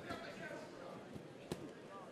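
Faint arena background in a fight ring, with a small knock about a second in and a single sharp thud about one and a half seconds in, from the fighters exchanging strikes at close range.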